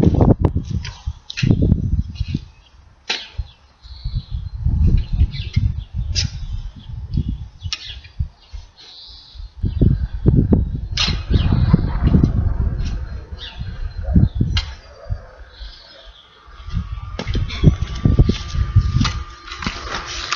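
A garden fork digging into a heap of rotted horse manure and straw, with a few sharp knocks and scrapes of the tines, over irregular gusts of wind buffeting the microphone.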